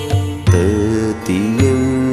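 A sung devotional mantra: a singing voice that bends and glides in pitch, starting a held line about half a second in, over a steady low drone and a regular beat.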